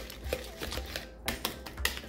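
A utensil clicking and scraping against a plastic mixing bowl in irregular strokes as room-temperature butter is mashed and creamed by hand.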